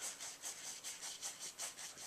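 Paintbrush dabbing and scrubbing paint onto a stretched canvas: a quick run of short, scratchy strokes, about five a second.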